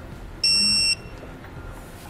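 A digital torque wrench giving a single high electronic beep, about half a second long, as a hitch mounting bolt reaches its set torque.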